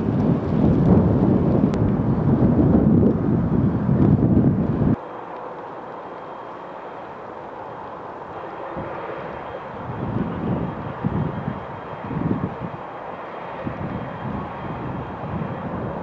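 Low rushing rumble of strong wind buffeting the microphone beside a grass fire. It is loud for the first five seconds, cuts off abruptly, then goes on quieter in gusts.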